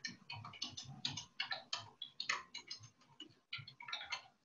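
Typing on a computer keyboard: quick, irregular key clicks, several a second, picked up faintly by the webcast microphone.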